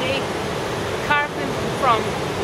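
Steady rush of the Coquihalla River running through the rock gorge, with a person's voice cutting in briefly twice, about a second in and near the end.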